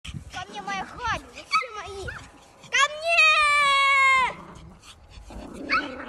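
Short high-pitched cries, then one long, loud, steady squeal held for about a second and a half from about three seconds in.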